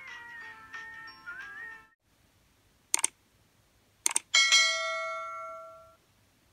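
A short bright melodic intro jingle that stops about two seconds in, then a single mouse click, a quick double click, and a loud bell ding that rings out and fades: a subscribe-button animation sound effect.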